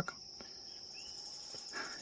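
Faint, steady high-pitched insect trilling from the surrounding vegetation, with a single short rising chirp about halfway through.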